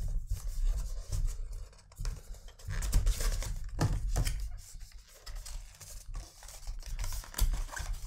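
Cardboard perfume boxes being handled and opened: the outer carton scraping and rubbing as the white inner box is slid out and its flaps opened, with irregular taps and rustles.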